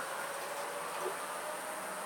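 Outdoor background ambience: a steady hiss with a faint, steady high-pitched tone and a few brief, faint chirp-like tones.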